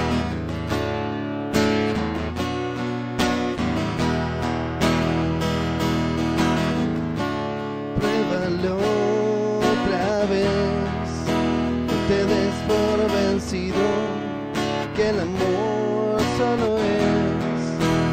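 Acoustic guitar strumming the intro of a song, with a wavering melody line joining about eight seconds in.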